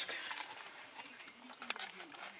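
Faint handling noise of a 3M half-face respirator with cartridges being picked up and held up: light rustles and small plastic clicks, with one sharper click near the end.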